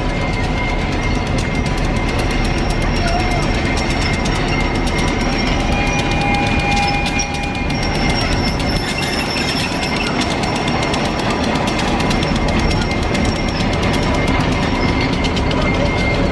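Diesel locomotive running as it moves a passenger coach slowly past, with a steady rumble and a few thin steady tones over it. A brief higher tone sounds about six seconds in.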